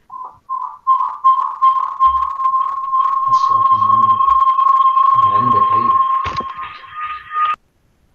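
Audio feedback howl in a video call: a loud whistle-like tone that starts as a few short blips, then holds steady for about six seconds with muffled voices beneath it. It steps slightly higher in pitch near the end and then cuts off suddenly. This is the sign of a microphone picking up its own speaker.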